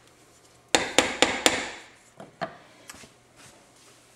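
A kitchen utensil clinking against a cooking pot: four quick, sharp knocks about a second in, then a few fainter clinks.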